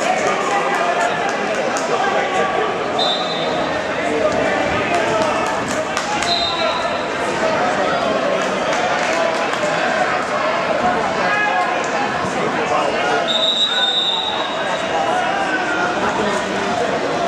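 Crowd chatter and shouting in a large gym during wrestling matches, with scattered thuds and claps. Three short, high whistle blasts come about three, six and thirteen seconds in.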